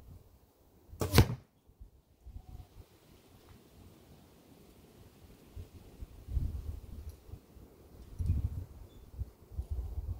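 A single arrow shot from a carbon fibre compound bow fitted with stabilizers: one sharp smack about a second in as the arrow is loosed and strikes the target bale.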